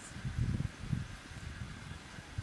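Wind buffeting the camera microphone in uneven low gusts.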